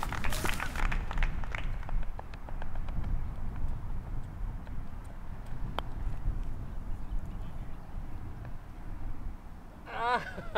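Wind rumbling on an outdoor microphone, with footsteps on dry, dormant turf in the first second or so. A single sharp click sounds about six seconds in.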